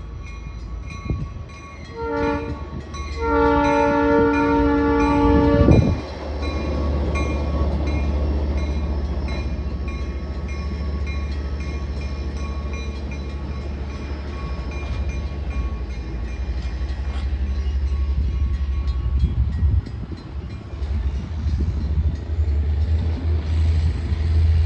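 Locomotive air horn sounding at a grade crossing: the end of one blast, a short blast and then a long one lasting about two and a half seconds. After it stops, the passenger coaches and caboose rumble and clatter steadily over the rails past the crossing.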